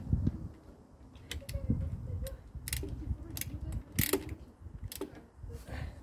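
Wrench tightening the mounting nuts of a forklift engine's belt-driven air compressor, locking in the freshly tensioned drive belt: a series of irregular metal clicks and knocks.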